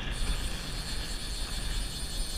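Steady wind rumble buffeting an action-camera microphone, with the wash of choppy water around a kayak.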